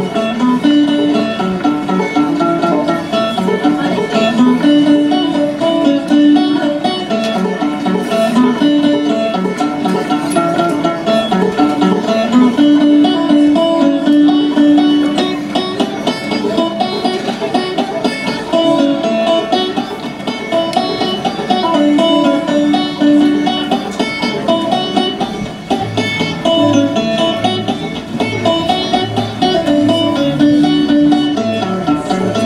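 Solo banjo playing a traditional tune, a steady stream of plucked notes throughout.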